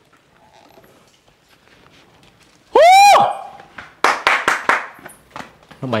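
A sudden shrill yelp about halfway through, rising and then falling in pitch, followed by about a second of quick scuffling and flapping noises as bats take flight in the rock cave.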